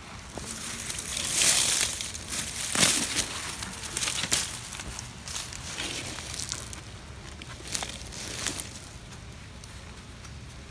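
Dry weed stems and leaves crackling and rustling as gloved hands pull them away from a beehive entrance, in several loud bursts over the first few seconds, then quieter handling with a few light clicks.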